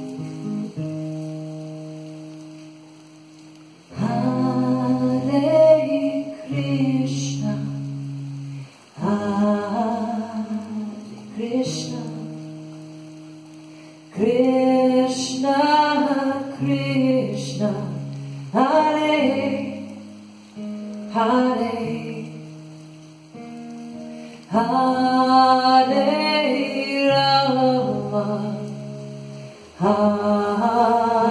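Devotional chant sung live by a woman over acoustic guitar, in about five phrases of a few seconds each; between phrases the guitar chords ring on and fade.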